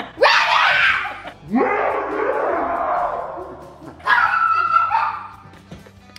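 Girls screaming and shrieking with laughter: three long screams, one after another, the last trailing off near the end.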